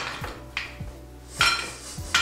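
Ice cubes being dropped with a metal bar spoon into a wine glass: a few light clinks, then a louder clattering clink about one and a half seconds in.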